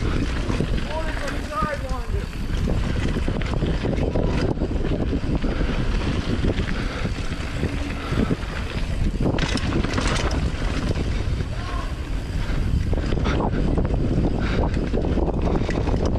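Wind rushing over the helmet microphone of a mountain bike descending a dirt trail, with the tyres rolling on dirt and rocks and the bike rattling and knocking over bumps throughout.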